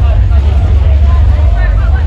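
A heavy band playing live through a club PA, recorded on a phone: a loud, distorted, unbroken wall of sound dominated by low bass, with a voice over it.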